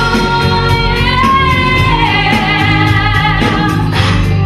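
Women singing a pop song live into microphones over instrumental accompaniment, with a long held note, wavering with vibrato, through the middle.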